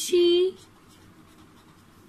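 Pen writing on lined notebook paper: faint scratching strokes as a word is written.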